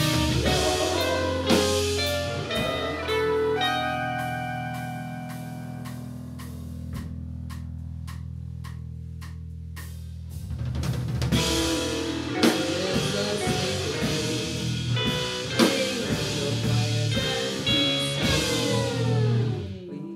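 Live rock band playing an instrumental passage on electric guitar, bass and drums. About four seconds in it thins to a long held chord with a few scattered drum hits, then the full band comes back in about ten seconds in, with a falling pitch slide near the end.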